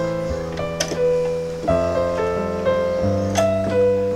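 Piano playing the song's guitar line as a melody over held bass and chord notes, the notes changing about every second.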